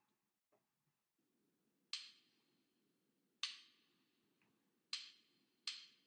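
Count-in clicks from the Yousician piano app's metronome: four short sharp clicks, the first three about a second and a half apart and the fourth coming sooner, counting in before the song starts. A faint low hum runs underneath from about a second in.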